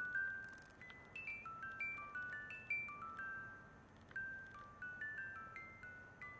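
The small music box built into a vintage Japanese Aria lighter playing a melody: faint, ringing single notes, about three a second, stepping up and down in pitch.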